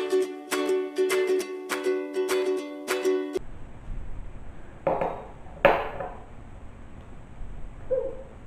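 Bright, upbeat ukulele music playing a run of plucked notes that cuts off abruptly about three and a half seconds in. After it, quieter room sound with two short knocks a little over a second later.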